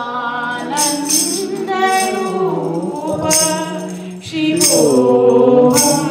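A woman singing a slow Sanskrit hymn to Shiva into a microphone, long held notes gliding in pitch, with jingling strikes of wooden kartal clappers keeping a loose beat. The singing swells louder near the end as she sings "Om".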